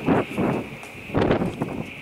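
Wind buffeting the microphone on an open ship deck, in three rough gusts, over a steady high-pitched hiss.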